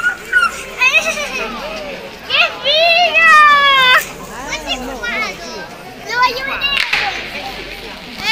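Children shouting and squealing excitedly while fireworks go off, with one long, loud, high cry in the middle and a sharp crack near the end.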